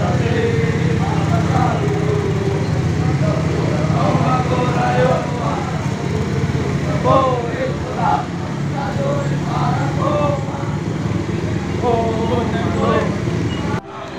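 Indistinct voices and occasional calls from people along a road, over the steady low hum of idling motorcycle engines, which fades somewhat after about five seconds.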